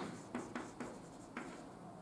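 Chalk writing on a chalkboard: a handful of short, faint strokes and taps as letters are written.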